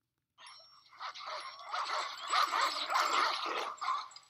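Film soundtrack of several dogs running past, their noise starting about half a second in and building to its loudest in the second half.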